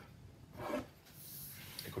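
Wooden baseball bat being picked up and handled on a wooden tabletop: soft rubbing and scraping of wood, with a faint hissing rub in the second half.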